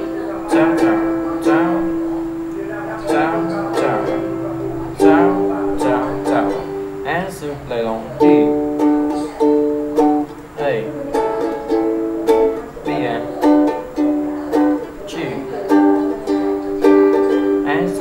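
Ukulele strummed through a D, A, Bm, G chord progression in a down, down, down-up pattern, with held notes sounding under the strums.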